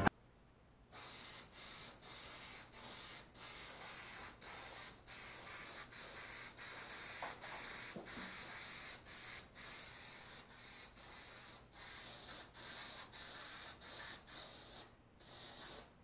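Aerosol spray adhesive hissing from a can in many short bursts, about two a second, as glue is sprayed onto the upholstery board. It starts about a second in and stops near the end.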